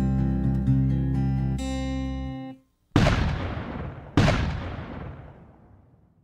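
Acoustic guitar accompaniment of a carol holding chords, stopping about two and a half seconds in. Then two loud booms a little over a second apart, each dying away in a long rumble: cannon-fire sound effects.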